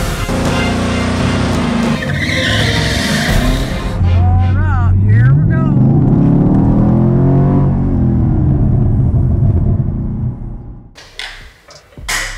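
Chevrolet Camaro SS's 6.2-litre V8 doing a burnout, its tires squealing against the pavement, then the engine pulling hard with its pitch climbing steadily as the car accelerates, before the sound fades out near the end.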